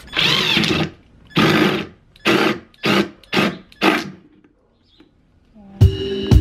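Cordless drill with a three-quarter-inch spade bit boring into the bottom of a flower pot, run in six trigger bursts, the first two longer and the rest short. It stops about four seconds in, and music starts near the end.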